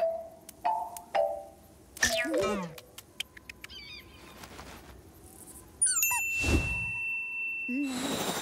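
Cartoon chick's short peeps, three in the first second and a half, then a falling squawk-like call and small high chirps. About six seconds in, a cartoon sound effect of rising whistles and a held high tone comes in, followed by a heavy thud, over light background music.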